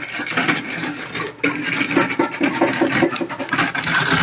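A block of ice being scraped back and forth on a metal box grater, shaving it into a bowl: repeated quick rasping strokes.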